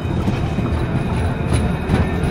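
A First Great Western passenger train passing close by, its coaches' wheels making a steady rumble on the track.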